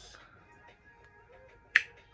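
A single sharp click about three quarters of the way through, over a faint quiet background.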